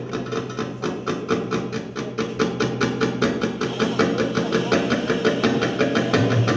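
Live Arabic oriental ensemble playing a fast rhythm, driven by rapid, evenly spaced hand-drum strokes over sustained accompanying instruments.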